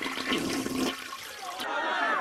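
A toilet flushing: a rush of water with a low steady hum that cuts off about one and a half seconds in.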